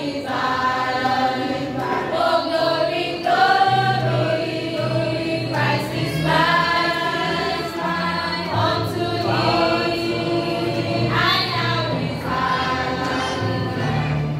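A youth choir of boys and girls singing a song together, phrase after phrase with short breaks between.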